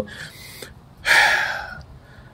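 A man breathing audibly into a close microphone, with no voice: a faint breath in the first half second, then a louder breathy rush about a second in that fades out within a second.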